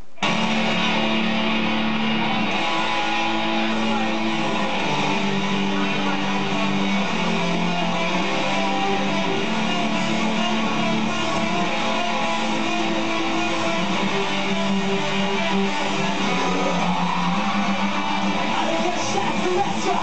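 Two electric guitars playing a melodic metalcore song. The music starts abruptly right at the start and keeps an even loudness throughout.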